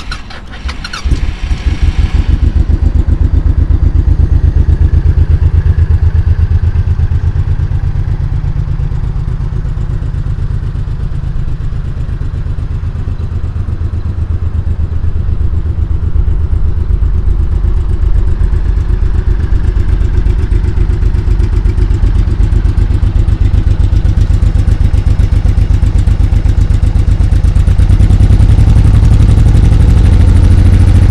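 A 2002 Honda VTX1800C's 1800cc fuel-injected V-twin fires up about a second in and settles into a steady idle with a low, even pulse. It gets a little louder near the end.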